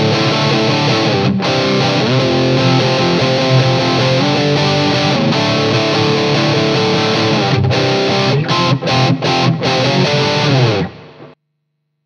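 Electric guitar (Fender Telecaster) played through a JHS Muffuletta fuzz pedal set to its Triangle Big Muff mode: thick, heavily fuzzed chords that change pitch, cut off suddenly near the end.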